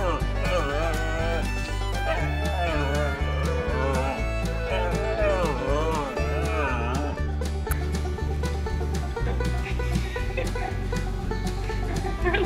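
Siberian husky howling in long wavering calls that rise and fall, stopping about seven seconds in, over bluegrass music with banjo and a steady bass.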